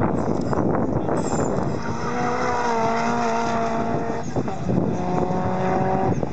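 Subaru Impreza race car engine running under load through a corner: a rough, noisy sound at first, then a steady engine note that sags slightly. About four seconds in the note breaks briefly and picks up again at a new pitch, like a gear change.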